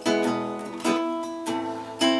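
Acoustic guitar strummed three times, each chord left to ring and fade, playing the song's A minor and E chords.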